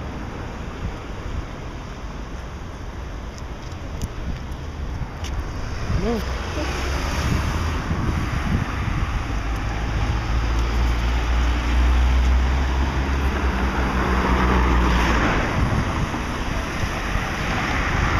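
Wind rumbling on the microphone over outdoor street traffic, with the low rumble growing heavier in the middle and easing near the end.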